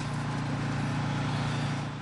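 Steady city street traffic noise: an even low rumble with a faint hiss, no sharp sounds.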